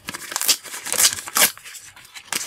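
A sticker packet's wrapper being torn open by hand, crinkling and ripping in a few short tears.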